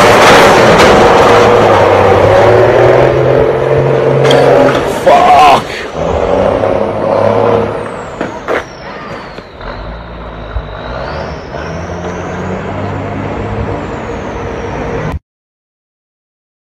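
A heavy diesel engine running and revving hard, loudest in the first five seconds, with a short loud rising squeal about five seconds in. The engine then carries on more quietly while a thin high tone glides down and back up, and the sound cuts off abruptly shortly before the end.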